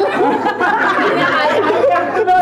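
Several people talking over one another at once: loud, continuous group chatter in a large room.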